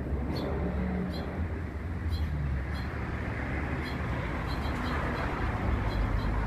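Steady outdoor background noise: a low rumble with a hiss above it, with a few faint, short high chirps scattered through.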